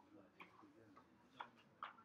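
Near silence in a lecture hall: a faint murmur of voices with three light clicks, the last two near the end the loudest.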